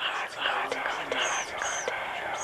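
Whispering voices with no clear words, breathy and hushed, illustrating the hearing of voices.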